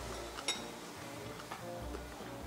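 Quiet background music with a steady bass line. About half a second in, a metal spoon clinks once against a glass bowl, with a short ring, and there is a fainter tick about a second later.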